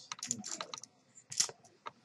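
Poker chips clicking together as they are picked up and stacked: a scatter of sharp, separate clicks, the loudest about one and a half seconds in.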